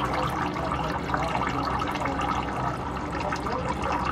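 A thin stream of old oil draining from the underside of a Toyota Vitz, splashing steadily with a fine patter throughout.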